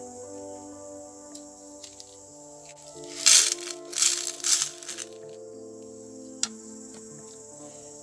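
Gold-plated connector pins poured into a clear plastic tray on a digital scale: a burst of small metallic rattling about three seconds in, lasting under two seconds, followed by a single click. Background music plays throughout.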